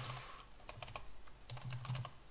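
Computer keyboard typing: a run of quick, irregular key clicks as a short chat message is typed.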